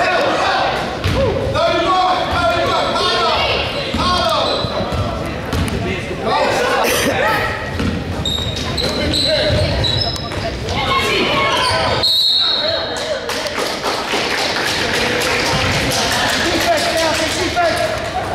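Basketball bouncing on a hardwood gym floor, with players and spectators shouting indistinctly, echoing in a large gym.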